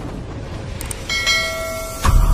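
A short mouse-click sound, then a bright bell chime ringing from about a second in, over a low rumbling sound-effect bed: the click and notification-bell effect of an animated subscribe button.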